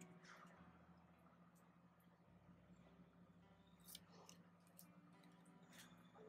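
Near silence: a steady low hum with a few faint crackles and clicks of a paper sticker being peeled from its backing and handled.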